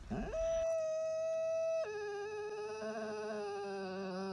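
Husky howling in one long drawn-out call. It rises quickly to a steady note, then steps down to a lower note a little under two seconds in and holds it.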